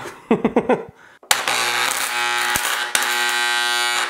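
A short laugh, then a loud, steady electrical buzz that cuts in abruptly with a click about a second in and holds until near the end. It is the rewound microwave oven transformer humming under a near-dead-short, high-current load as its cable ends are pressed onto a penny to melt it.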